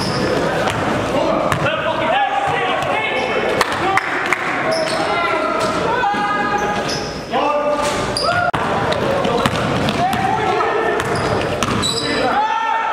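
A basketball bouncing on a gym's hardwood floor, with players' voices echoing around the large hall.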